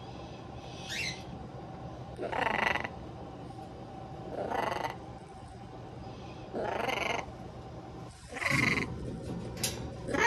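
A severe macaw giving a series of about five short, raspy calls, one every second or two.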